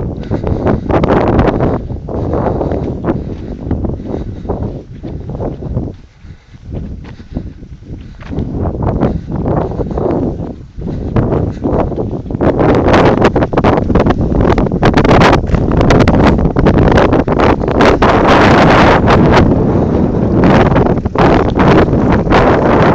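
Wind buffeting the microphone in loud, rough gusts. It eases briefly about six seconds in, then blows harder and more steadily from about twelve seconds on.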